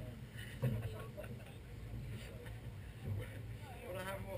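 Indistinct voices of people talking nearby, over a steady low hum.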